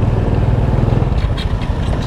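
Small motorcycle (scooter) engine running steadily while riding at low speed, heard under a heavy low rumble of wind on the microphone.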